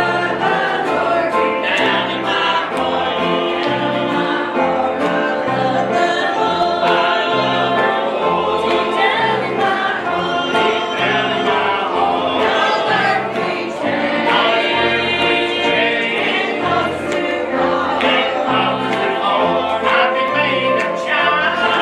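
Congregation singing a gospel hymn together, accompanied by banjo and electric bass guitar with a steady walking bass line.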